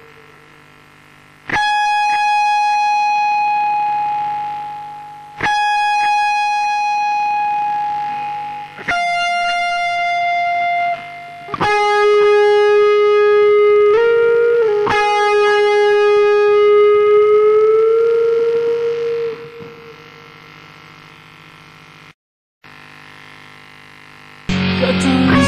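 Les Paul Custom-style electric guitar played through distortion, picking slow single notes that each ring out for several seconds. One note slides up and straight back, and the last is bent slowly upward before fading into a faint amplifier hum.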